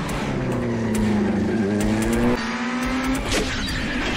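Vehicle engine revving during a TV chase scene, its pitch sliding down and then climbing again, with a sharp hit about three and a half seconds in.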